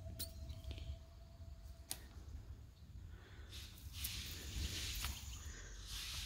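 Quiet outdoor background with a steady low rumble, a single click about two seconds in, and a soft hissing rustle over the last two and a half seconds.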